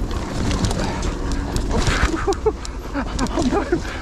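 Mountain bike descending a rough, leaf-covered trail: a steady low rumble of wind and tyres, with rapid clicks and rattles from the bike over roots and bumps. A few short pitched squeaks come in the second half.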